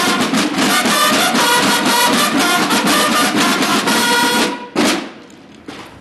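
Mexican Army banda de guerra playing: a row of field drums beating a steady rhythm under bugles sounding a call. The band cuts off about four and a half seconds in, with one last short accent just before five seconds, then a brief pause.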